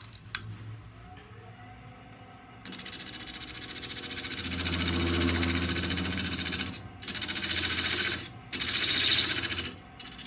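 Wood lathe spinning a stabilized (resin-impregnated) wood lid while a gouge hollows out its inside: a dense rasping cut that starts about three seconds in and stops and starts again twice near the end as the tool is lifted. Before the cut only a low lathe hum is heard.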